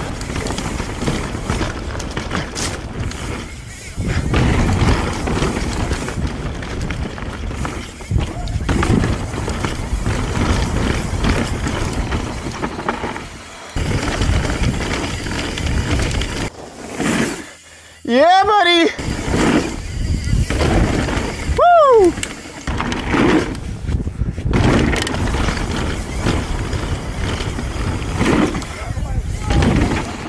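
Mountain bike ridden fast down a dry, rocky dirt trail: steady wind on the camera microphone with tyre rumble and rattling over rocks and roots. About two-thirds of the way through, a rider gives a short whoop, then a falling 'woo' a few seconds later.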